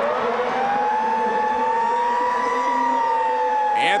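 Stadium siren sounded for a touchdown, wailing as one long tone: it climbs in pitch over the first second, holds, and slowly sinks toward the end.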